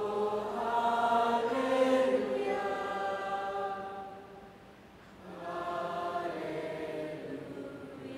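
A large congregation singing together in long held notes, in two swelling phrases with a brief dip about halfway.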